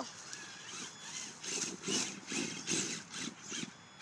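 Traxxas Summit electric RC truck's motor and gear drive whining in a string of short throttle bursts, about two a second, as it crawls up a bank over sticks.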